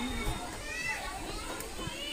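Many schoolchildren talking among themselves, a low babble of young voices. A faint steady high-pitched tone fades out in the first second.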